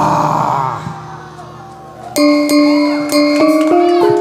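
Live Javanese gamelan music for a kuda kepang dance: a held wavering vocal note tails off in the first second and the music drops quiet. About two seconds in, the metallophones come in loudly, striking a run of ringing pitched notes.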